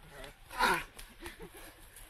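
A short, loud shout or yell about half a second in, followed by fainter scattered voices.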